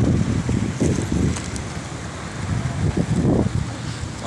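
Wind buffeting the microphone outdoors by open water, a gusting low rumble that eases off midway and swells again.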